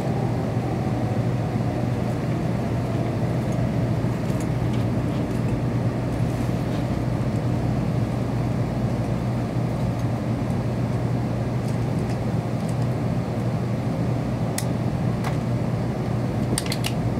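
Steady running noise of a Kyushu Shinkansen train heard inside the passenger cabin as it pulls into Shin-Tosu station to stop: a low, even hum over rumble, with a few sharp clicks near the end.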